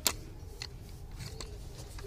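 A single sharp plastic click near the start as the grey locking clip of a BMW ignition coil's electrical connector is pressed home, followed by a few faint handling ticks.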